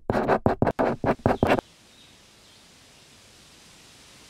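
Pen-on-paper sketching sound effect: about ten quick, sharp scratchy strokes in the first second and a half, then a faint steady hiss.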